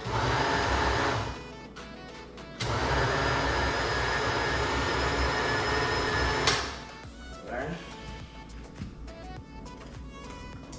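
Countertop blender grinding rice in a little water, run in two pulses: it runs for about a second and stops, then runs again for about four seconds and cuts off suddenly.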